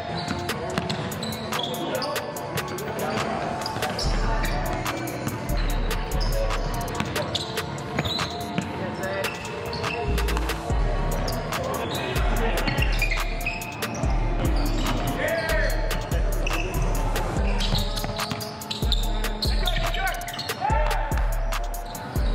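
Basketballs bouncing on a hardwood gym floor during a pickup game, a quick run of sharp thuds, under background music whose deep bass line comes in about four seconds in.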